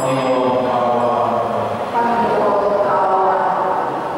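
Liturgical chant sung at Mass: slow, held notes, the melody moving on about every second or two.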